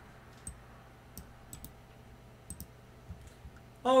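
About half a dozen faint, sharp clicks at a computer, some in quick pairs, as the selected MATLAB line is run. Beneath them are quiet room tone and a low, steady hum.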